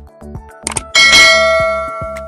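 A click, then a loud bright bell ding about a second in that rings out and fades over about a second: the sound effect of a subscribe-button click and notification-bell animation, over background music with a steady beat.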